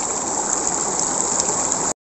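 Shallow river water flowing steadily over rocks, a continuous even rushing. It cuts off suddenly just before the end.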